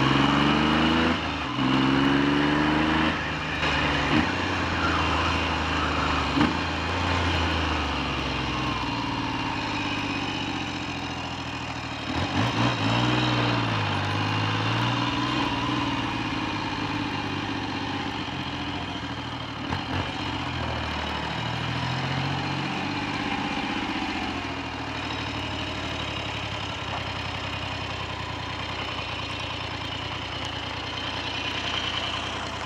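Triumph Trident T150V's three-cylinder engine pulling away through a gear change in the first few seconds, then easing off. The revs rise and fall twice more, and the engine settles to a steady idle over the last several seconds. The owner says its tickover, and possibly the mixture screws, need adjusting.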